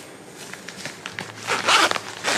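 Zipper on a fabric backpack being pulled along in one quick stroke near the end, after some faint handling of the bag's fabric.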